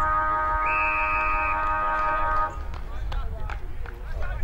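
A steady, unwavering horn sounds loudly for about three seconds and cuts off suddenly. A short, high whistle blast joins it in the middle. After it come shouts and thuds from the play.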